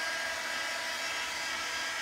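Handheld craft heat tool running steadily, a blowing fan with a faint motor whine, drying a wet paint wash on a wooden round.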